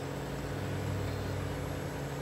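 Kubota BX23S subcompact tractor's three-cylinder diesel engine running steadily, heard from the operator's seat.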